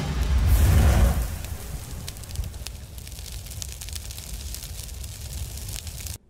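Intro logo sound design: a deep boom with a rushing whoosh in the first second, fading slowly into a long, faintly crackling hiss.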